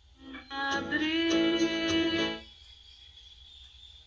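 Music from a DRM digital shortwave broadcast played through a Gospell portable radio: a swell of pitched, possibly sung, notes starting about half a second in and held for about two seconds, then dropping to a quiet sustained tone.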